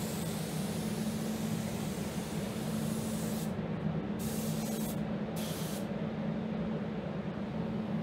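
Compressed-air gravity-feed paint spray gun hissing steadily as paint is laid on, then cutting off; two short hisses follow a little later as the trigger is pulled briefly. A steady low hum from the paint booth's ventilation fans runs underneath.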